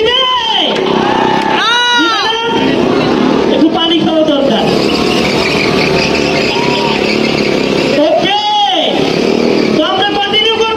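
Stunt motorcycle engines revving in sharp blips, three times, each rising and falling in pitch, over a constant noisy din.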